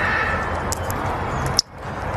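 African grey parrot imitating running water: a steady rushing, splashing hiss with a few small clicks. It breaks off briefly near the end.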